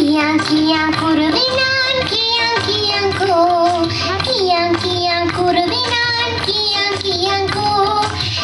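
A child's voice singing a melody over instrumental music accompaniment, with held notes that glide between pitches.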